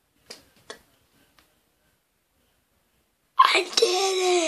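A pencil tapped twice against a boy's head in the first second, then a pause, then a sudden loud outburst of his voice near the end: a sharp burst that turns into a pitched, wavering cry.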